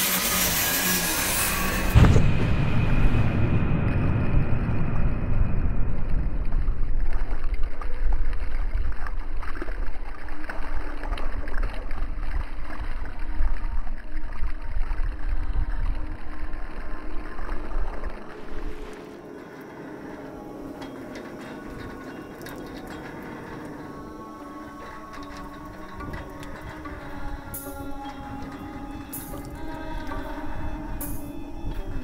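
Experimental sound-art soundtrack: a loud, muffled low rumble with a sudden thud about two seconds in, falling away after about 18 seconds to a quieter drone of held tones.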